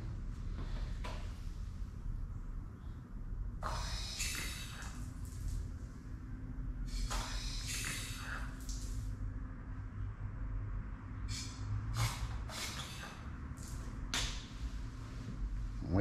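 Homemade water-methanol injection kit being test-sprayed: several bursts of hissing spray from its jet, the longest about two seconds, over a low steady hum.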